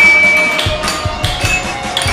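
Background music with a steady beat and held tones, a high tone sounding briefly at the start.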